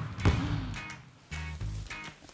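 A basketball is dribbled on a hardwood gym floor, with a sharp bounce about a quarter second in, over background music whose low bass notes come in after about a second.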